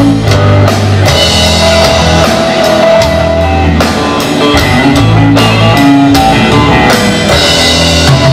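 Live rock band playing an instrumental passage on amplified electric guitars and a drum kit, with sustained low notes under held guitar lines and steady drum hits.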